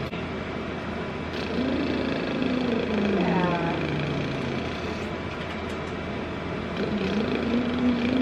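A woman's first attempts at voicing a week after voice feminization surgery: a soft held tone that slides down in pitch, then a second held tone starting near the end.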